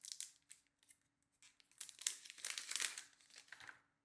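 Thin plastic protective film being peeled off a new smartphone: faint, scattered crinkling crackles, a few at first and more in the second half.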